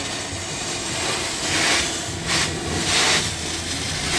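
Truckmount carpet-cleaning wand (Zipper) spraying solution at 500 psi and vacuuming it back up: a steady rushing hiss that swells three times in the middle and later part.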